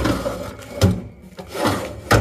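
Steel tool-cabinet drawer slid shut and a second drawer pulled open, loose tooling rattling inside, with a sharp knock a little under a second in.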